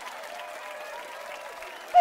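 Game-show studio audience applause, a steady even clatter of clapping.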